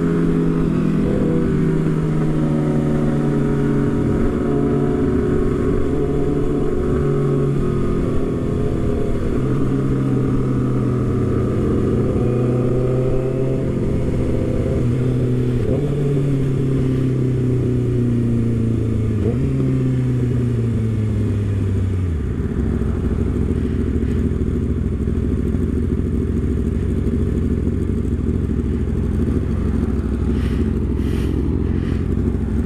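Kawasaki Ninja ZX-6R 636 inline-four engine running at highway speed over strong wind rush on the microphone. From about the middle its note falls as the bike slows, stepping back up briefly a couple of times. After about 22 seconds the engine note drops away and only wind and road noise remain.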